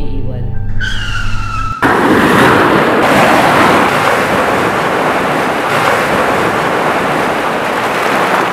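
Car tyres squeal in a high screech for about a second over music. Then a loud, steady rush of crashing surf cuts in suddenly and holds to the end.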